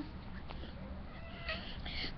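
A domestic cat meowing faintly, short and quiet, about a second and a half in.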